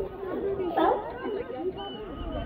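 California sea lions calling, with overlapping barks and grunts from the herd on the docks and one stronger bark a little under a second in.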